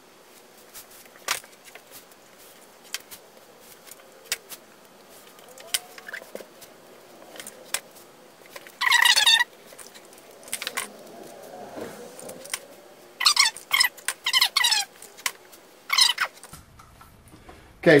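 ShaperTape adhesive tape being pulled off its roll in short, screechy strips: once about halfway through, then three or four more pulls close together near the end. Light taps and clicks come between the pulls as the strips are laid and pressed onto MDF boards.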